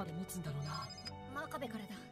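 A phone ringing from the anime's soundtrack: a brief electronic trill. It sounds over a voice speaking Japanese and background music.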